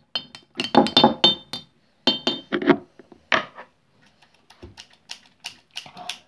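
Scissor blades clinking against the inside of a glass mason jar as a liquid mixture is stirred, in quick runs of taps with the glass ringing briefly, then a few single knocks.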